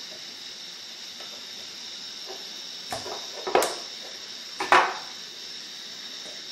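Small lab items being handled on a table, a variable pipette and a glass screw-top jar: three sharp clicks and knocks about three, three and a half (the loudest) and nearly five seconds in, over a steady faint hiss.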